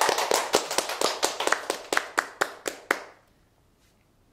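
Two people clapping their hands in a short round of welcome applause: quick, dense claps that thin out to a few separate ones and stop about three seconds in.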